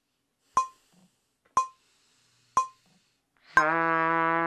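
Metronome clicking once a second through a rest, then a trumpet comes in on a low held note about three and a half seconds in, with the clicks carrying on over it.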